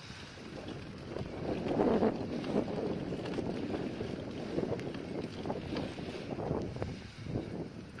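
Wind buffeting a handheld camera's microphone in uneven gusts, strongest about two seconds in.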